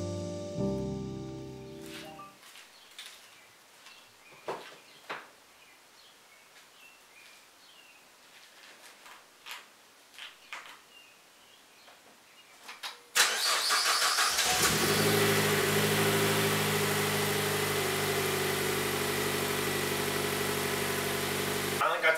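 Music fades out over the first two seconds, then a few faint clicks. About thirteen seconds in, the Chevrolet Sonic RS's turbocharged 1.4-litre four-cylinder cranks briefly on the starter, catches, and settles into a steady idle on its freshly fitted ported intake manifold.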